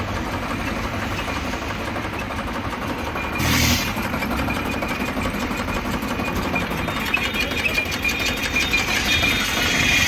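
Steady road traffic noise from vehicles on a highway, with a short loud rush of noise about three and a half seconds in.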